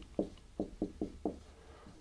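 Felt-tip marker knocking and tapping against a wall-mounted whiteboard while figures are written: a quick run of about five light knocks in the first second and a half.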